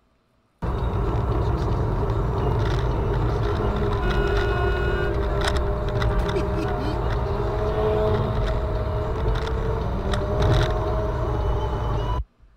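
Car driving at road speed heard from inside the cabin: steady engine and tyre noise that starts abruptly about half a second in, with a few faint held tones and light clicks over it.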